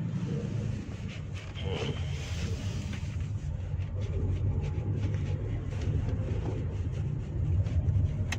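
Steady low road and tyre rumble heard inside the cabin of a Toyota Innova Zenix hybrid MPV as it drives along a street.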